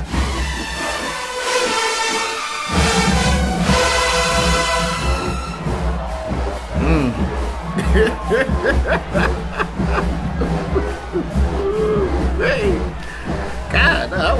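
Mass marching band on the field: brass holds loud sustained chords over a drum beat. From about six seconds in, voices shouting and chanting take over above the continuing drums.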